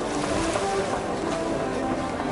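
Seaside ambience: wind on the microphone and water at the shore, with a murmur of distant voices.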